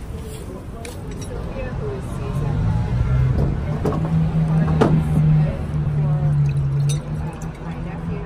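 City street sound: a vehicle engine runs close by for a few seconds with a steady low drone, fading near the end, over indistinct voices of passers-by.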